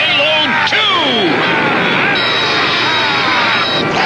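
Cartoon battle sound effects: a run of falling whistling tones, with a sharp crack just under a second in and a steady high tone through the second half.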